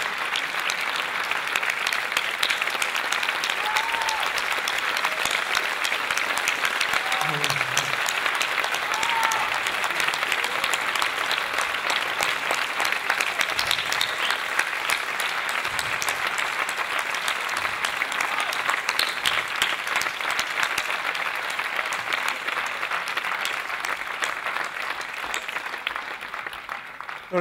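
A large audience applauding in one sustained round of clapping that eases off slightly near the end.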